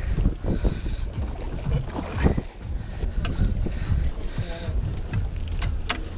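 Wind and water noise on a small boat at sea: a steady low rumble with a few knocks, and faint voices in the background.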